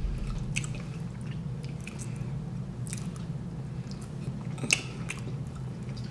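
A person chewing rotisserie chicken with the mouth close to the microphone, with scattered short wet clicks; the sharpest click comes about three-quarters of the way through. A steady low hum runs underneath.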